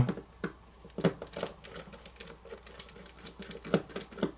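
Irregular light clicks and ticks of a small Phillips screwdriver working a tiny screw out of a smartphone's frame, with a couple of sharper clicks near the end.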